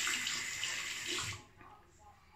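Bathroom tap running into a sink during a wet shave, a steady hiss of water that stops about a second and a half in.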